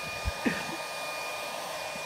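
Handheld hair dryer running on a steady setting, blowing a column of air upward: an even rushing hiss with a faint steady high whine from its motor.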